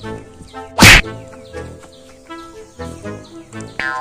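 A single loud whack, like a slap or punch hit effect, just under a second in, over background music.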